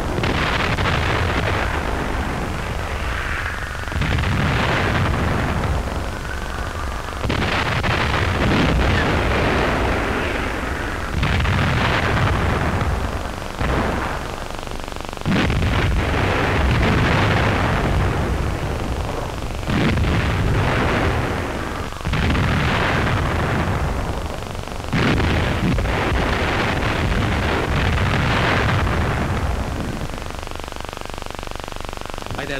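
Heavy artillery bombardment: about a dozen big blasts from guns firing and shells bursting, one every two to three seconds. Each starts suddenly and rumbles away over a couple of seconds.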